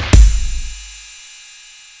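A drum-machine beat made from Roland TR-808 samples plays its last hit just after the start: a sharp kick-and-snare strike whose deep 808 kick boom dies away over about a second as the pattern stops.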